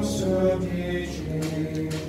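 A group of voices singing liturgical chant together, moving slowly between held notes.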